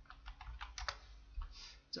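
Computer keyboard typing: a quick, irregular run of key clicks as a stock name is entered into a search box.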